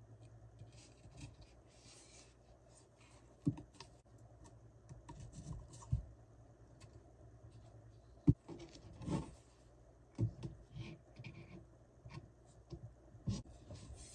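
Flat-pack shelf panels of particleboard and small wooden pegs being handled during assembly: scraping and rubbing, broken by several sharp knocks, the loudest a little past the middle.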